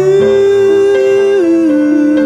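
Acoustic cover song: a male voice holds one long sung note that steps down in pitch partway through, over a soft acoustic guitar accompaniment.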